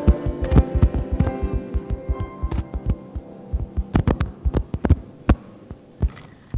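The held final chord of a hymn's accompaniment dying away over the first few seconds. Under it runs an uneven series of sharp thumps and knocks, dense at first and thinning out towards the end.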